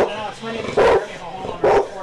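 A dog barking: three loud barks, evenly spaced a little under a second apart.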